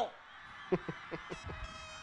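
A few short faint vocal pulses, then a steady horn tone with many overtones starts about two-thirds of the way in and holds.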